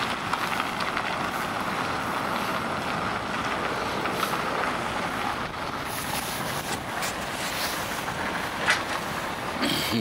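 Steady outdoor noise of a sheriff's patrol SUV's engine running, with the SUV pulling away near the end.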